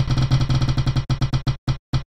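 Spinning-wheel ticking sound effect: a rapid run of sharp, pitched ticks that slow down and space out over the second half as the wheel comes to rest.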